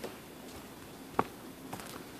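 A pause in a small room: low background noise, with one sharp click about a second in and a couple of faint ticks soon after.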